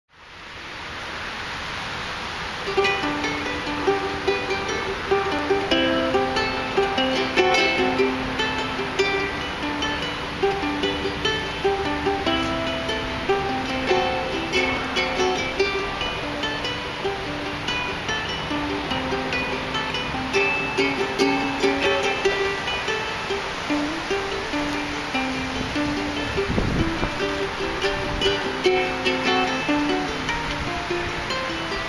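Solo ukulele playing a plucked melody, with each note picked out separately. It fades in over the first couple of seconds, and a brief low rumble passes under the playing near the end.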